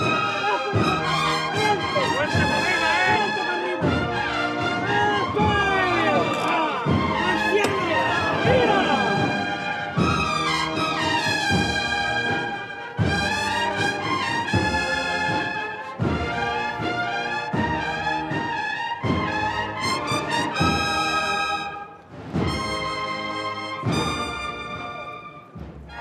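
Brass band playing a Holy Week processional march: trumpets and other brass over a steady drum beat of about one stroke a second, with crowd voices mixed in.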